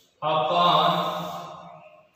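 A man's voice holding one long, chant-like sound at a steady pitch. It starts just after the beginning and fades out about a second and a half later.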